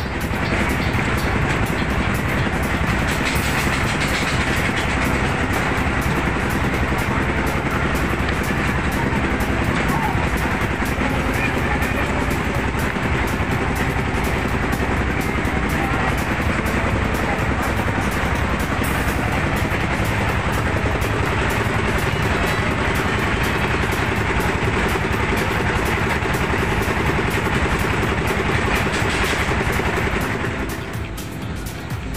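A loud, steady din of engine noise mixed with music over loudspeakers, with no break.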